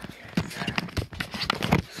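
Footsteps on a hard floor: a quick, uneven run of short knocks as someone walks.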